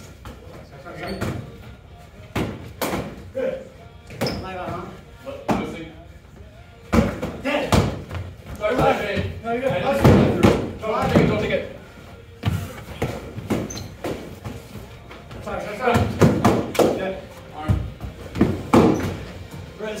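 Foam-padded swords and shields striking in close melee: a run of short, sharp thuds and slaps at irregular intervals, among voices in a large hall.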